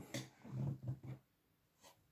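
A few faint, brief rustling scrapes in the first second, then near silence.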